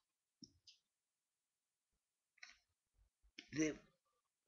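A few faint, short clicks in a quiet room: two close together about half a second in and another about two and a half seconds in.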